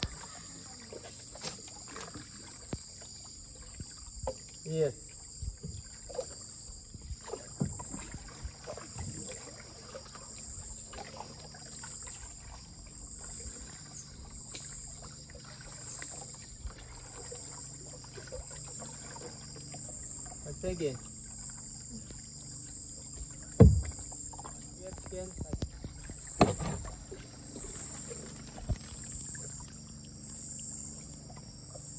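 Wooden dugout canoes being paddled through flooded forest: paddle strokes in the water and a few sharp knocks of wood on wood, the loudest about three-quarters through. Under them runs a steady high buzz of insects.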